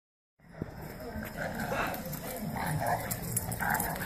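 A dog vocalizing, with people talking in the background.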